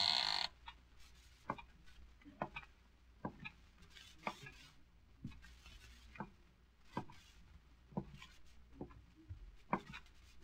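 Slow, steady footsteps, one knock a little under every second: a radio sound effect of a person walking down the stairs. A short noisy sound cuts off about half a second in.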